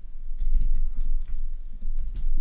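Computer keyboard being typed on: a quick run of separate keystroke clicks as code is entered.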